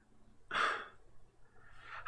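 A man's single short, audible breath, about half a second in.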